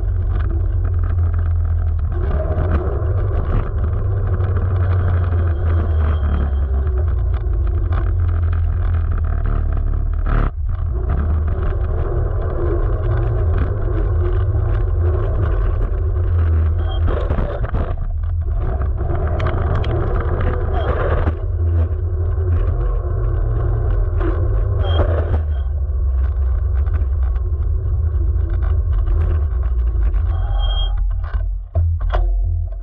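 Electric scooter riding over asphalt, heard from a camera mounted low on its frame: a loud, steady low rumble of tyre and road noise, with one brief dip about ten seconds in.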